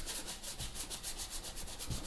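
Paintbrush scrubbing thin acrylic paint, mixed with glazing medium, onto a painting's background in quick, even back-and-forth strokes, about eight to ten rubbing scrapes a second.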